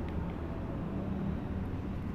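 Quiet steady low background rumble with a faint tick of a pen on paper near the start.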